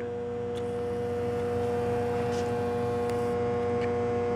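Steady electrical hum: an unchanging mid-pitched tone with a second, higher tone above it.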